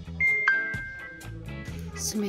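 A two-note electronic chime, a high note followed by a lower one that rings out and fades over about a second, over background music.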